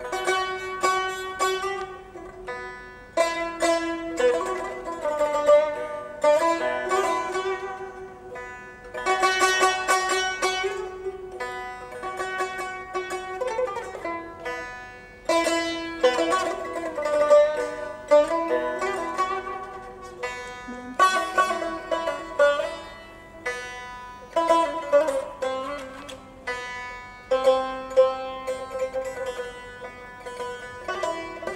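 Azerbaijani tar played solo with a plectrum: a melody of fast plucked notes and rapid strummed strokes, in phrases broken by brief dips.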